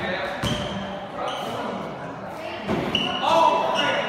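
A basketball bounces a few times on a hard indoor court floor, with short high squeaks. The sound echoes in the hall.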